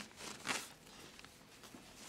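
Soft rustling of the iMac Pro's dark protective wrapper being pulled down off the computer, with a couple of faint swishes near the start and about half a second in.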